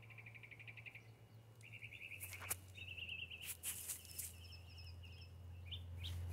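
A small bird calling faintly in short, rapid trilled chirps, phrase after phrase about a second apart, with a few sharp clicks in the middle and a low steady hum underneath.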